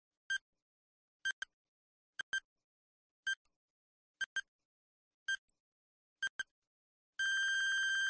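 Quiz countdown timer sound effect: short electronic beeps about once a second, some in quick pairs, then one longer beep near the end as time runs out.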